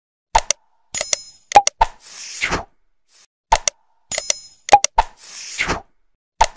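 Subscribe-button outro sound effects played in a loop: sharp clicks, a bell-like ding and a whoosh, the same sequence repeating about every three seconds.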